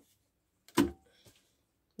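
A single short knock, a little under a second in.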